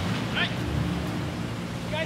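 Boat engine running with a steady low drone, under a wash of wind and sea noise.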